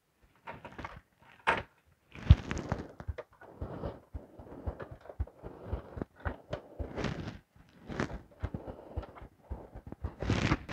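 Power-supply cables and their plastic plugs being handled and pushed onto drives inside a metal desktop PC case: irregular clicks, knocks and rustling of the cable bundle, with the sharpest knocks about one and a half and two and a half seconds in.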